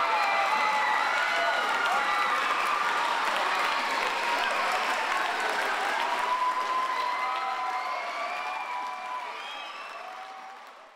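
Audience applauding, with crowd voices mixed in among the clapping. It fades out over the last few seconds.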